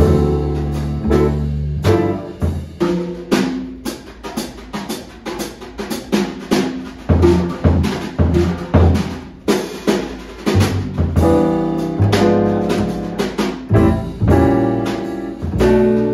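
Live jazz with a drum kit playing prominently over plucked upright double bass notes.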